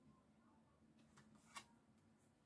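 Near silence, with a couple of faint light taps from tarot cards being handled and laid on the table, one a little past a second in and another about a second and a half in.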